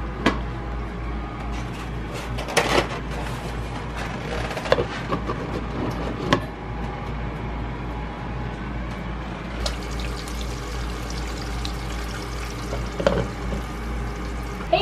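Eggs frying in a covered skillet: a steady sizzle with scattered sharp pops, over a low steady hum.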